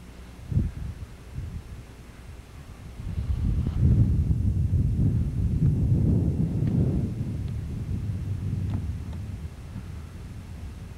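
Wind buffeting a camcorder microphone outdoors: an irregular low rumble that swells about three seconds in and eases off near the end, after a short thump near the start.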